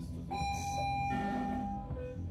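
Experimental electronic music: steady held electronic tones over a dense low bass layer, with a second group of higher tones coming in about halfway through.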